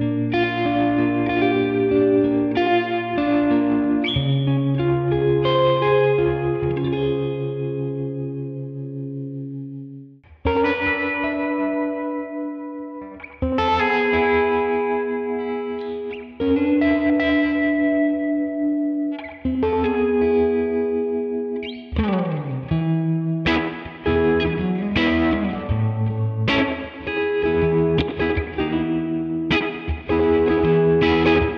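Telecaster electric guitar playing R&B-style chords through a Tone King Imperial MKII amp plugin, with the amp's tremolo and spacious reverb. The middle part has single chords struck about every three seconds and left to ring out. The last third is busier, with a slide.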